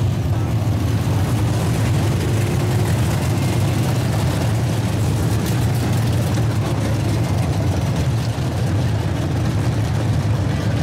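Dirt-track Modified race cars' V8 engines running together as the field circles the oval, a steady, loud, continuous drone.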